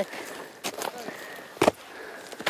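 Planting spade driven into slash-covered ground, with one sharp strike about one and a half seconds in as the blade cuts through bark and woody debris into the soil: the shovel cuts that open a hole for a tree seedling.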